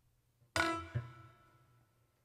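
Piano struck sharply twice in quick succession about half a second in, a bright ringing sound that dies away over about a second.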